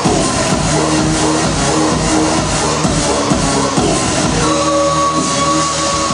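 Dance music played for a break dance routine, with a steady kick drum at about two beats a second. About four and a half seconds in, the kick drops out under a held high note.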